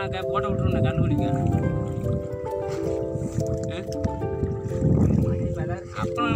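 Background music with long held notes, possibly a song, since the recogniser picked up stray words like sung lyrics around it, over a continuous low rumbling noise.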